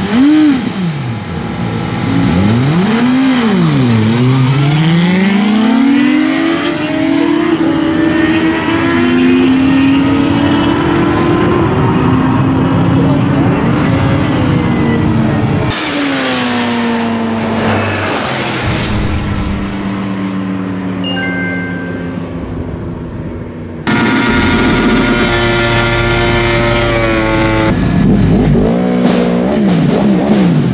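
Sport motorcycle engines, a Suzuki GSX-R and a Honda CBR, revving at a drag-strip start line, then launching and pulling hard through the gears, the pitch climbing and dropping back at each upshift. After abrupt cuts, more high-revving motorcycle engine runs follow, and near the end engines rev again, rising and falling.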